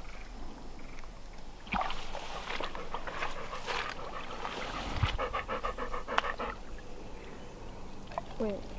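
Chocolate Labrador retriever panting in quick, even breaths.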